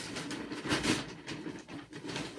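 Rustling and scraping as multi-purpose compost is handled and scooped out of its bag, in a run of irregular strokes that is loudest just under a second in.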